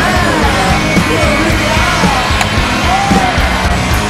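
Rock song with a sung vocal melody over a loud, steady full band.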